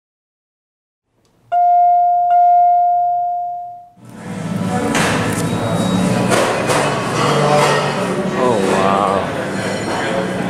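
A bell-like chime struck twice, a little under a second apart, on one clear ringing tone that fades away. About four seconds in, it cuts abruptly to the echoing sound of a large lobby with people talking.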